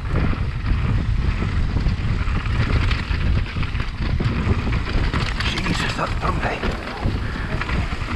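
Wind rushing over a GoPro action camera's microphone on a moving mountain bike, mixed with the rumble of tyres on a dirt trail. A burst of sharper rattles comes about five to six seconds in.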